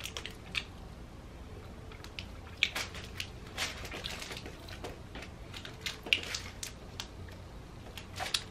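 Close-up mouth sounds of chewing a chocolate-coated marshmallow and strawberry gummy candy (Bubulubu). They come as soft, irregular smacks and clicks spaced a second or more apart.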